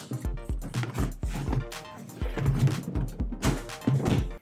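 Background music with a steady low beat.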